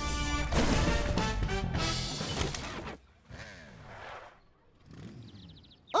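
Cartoon soundtrack music with crash sound effects for about three seconds, then it drops off suddenly to a much quieter passage.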